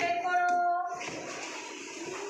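Children's voices chanting in a classroom lesson: one long, high-pitched held syllable for about the first second, then quieter voices.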